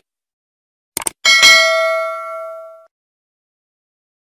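Two quick mouse-click sound effects about a second in, then a single bright bell ding that rings out and fades over about a second and a half. This is the subscribe-button and notification-bell sound effect of an animated subscribe end screen.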